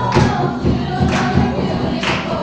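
A group of girls singing together as a choir, with a sharp beat about once a second.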